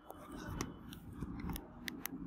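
A few faint, sharp clicks, about six in two seconds, over low rustling handling noise.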